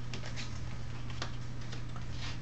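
Stiff oak tag pattern card being folded and creased by hand: a few light ticks and paper rustles, over a steady low hum.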